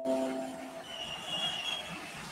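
A short multi-tone computer notification chime fading out in the first half second, then steady background noise with a brief high squeal near the middle.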